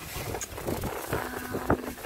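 Clear plastic trash bag crinkling and rustling as hands rummage through it, with a sharper knock of something among the contents near the end.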